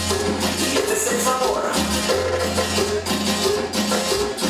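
Live band playing Latin dance music through a loud PA: a steady bass line with long held notes, chords over it and continuous hand percussion.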